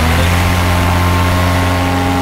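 Paramotor engine running steadily in flight, its pitch rising a little right at the start and then holding.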